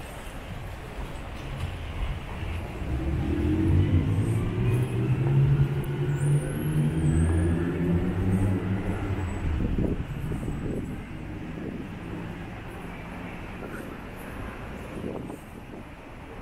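A motor vehicle's engine passing close by in street traffic: a low hum that builds about three seconds in, stays loudest for several seconds, then fades away after about ten seconds.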